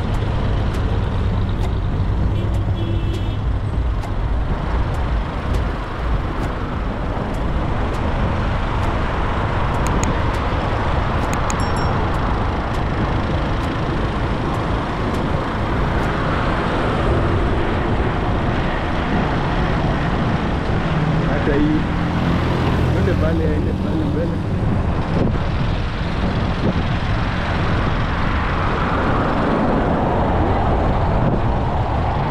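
Steady road traffic noise: car and truck engines running and tyres on the road, with a deep continuous rumble.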